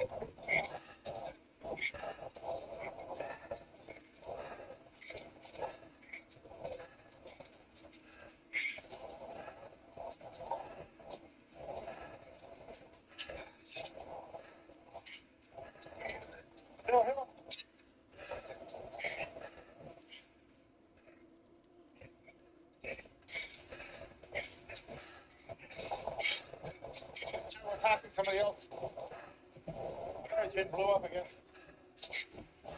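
Wordless vocal sounds from cyclists straining on a voice call: short irregular bursts of hard breathing, and a couple of wavering, bleat-like groans about 17 s and 28 s in. A faint steady hum runs underneath.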